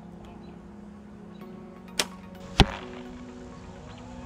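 A compound bow shot. The string snaps sharply on release about two seconds in, and about half a second later comes a louder thud as the arrow strikes the foam block target.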